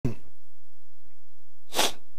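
Quiet room tone, then a man's short, sharp intake of breath into the microphone near the end.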